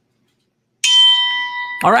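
A bell-like chime strikes suddenly about a second in and rings on with a clear, steady tone, slowly fading.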